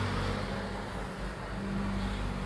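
A steady low background hum with a faint hiss, with no distinct strokes or events.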